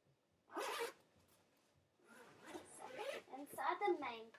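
A zipper on a quilted fabric backpack's front pocket pulled open in one quick stroke about half a second in, followed by more zipping and handling of the bag.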